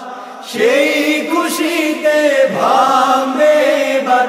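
Several male voices singing a Bengali Islamic song (gojol) together, taking up the next line after a short pause about half a second in.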